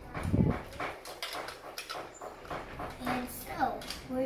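Hard plastic toy armor pieces knocking and clicking as they are fitted onto a Baymax figure, starting with a low thump about half a second in. Short sliding vocal sounds come in near the end.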